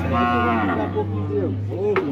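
Cattle mooing: a long moo in the first second, then shorter calls.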